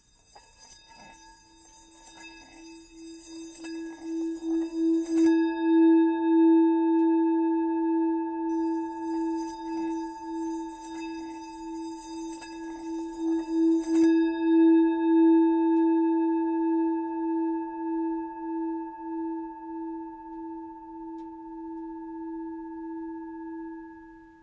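Singing bowl sounding one long ringing tone that swells over the first few seconds, pulses in loudness, and slowly fades.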